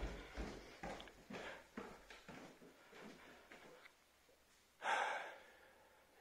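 Footsteps on a wooden staircase, a light knock about every half second over the rumble of a handheld phone, fading out after about two seconds. About five seconds in comes a single loud breath out through a surgical mask, from the exertion of the climb.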